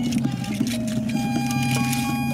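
Improvised experimental ensemble music: a steady low electronic drone under sustained tones that step to new pitches, with scattered clicks and taps.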